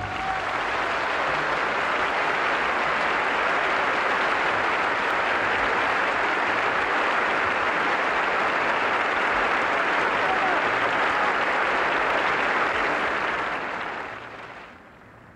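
Theatre audience applauding steadily, starting as the orchestral music stops, then dying away near the end.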